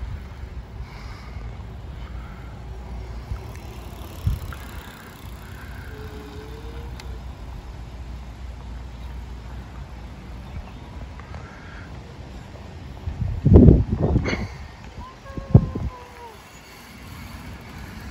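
Steady low rumble of wind on the microphone, with faint distant voices. A few loud thumps come near the end.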